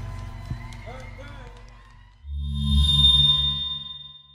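A live soul band and vocal fade out over the first two seconds. About two seconds in, a short, loud electronic logo sting starts, with a deep bass and a bright high ringing tone, and it dies away at the end.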